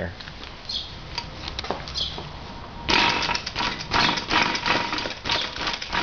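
Bicycle being bounced up and down, its parts rattling in a fast, continuous clatter that starts about three seconds in.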